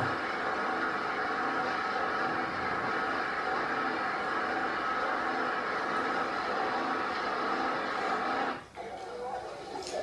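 Portable engine-driven sludge pump running with a steady mechanical drone of several held tones. It drops away about eight and a half seconds in.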